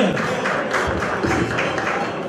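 Albanian folk instrumental: strummed long-necked lutes (çifteli and sharki) and a bowed fiddle playing a quick, rhythmic dance tune with a steady beat of strokes.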